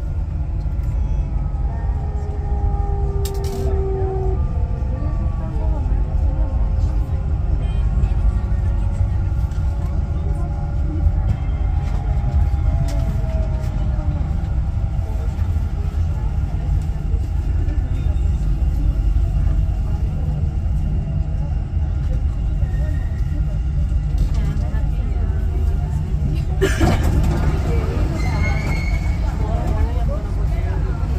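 Dubai Metro train running along an elevated track, heard from inside: a steady low rumble with a faint motor whine sliding in pitch. A broader rushing noise comes in about four seconds before the end as the train runs under the station canopy.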